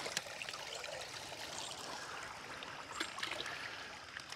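Shallow creek water trickling, with water running into a GRAYL Ti GeoPress titanium cup held under the surface to fill it, and a couple of faint knocks.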